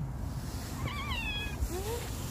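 Stray cat meowing twice: a high, wavering meow about a second in that falls away at its end, then a shorter rising call near the end.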